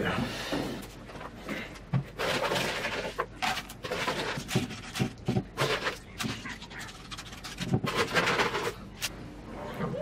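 Gloved hands working wet clay and granular bonsai soil on a slab: irregular rustling, scraping and gritty handling noises.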